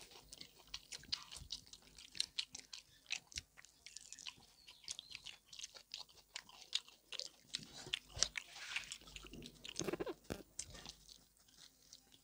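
Close-miked chewing and mouth smacks of people eating pork belly and rice by hand: a dense run of short, irregular wet clicks and smacks, a little louder about ten seconds in.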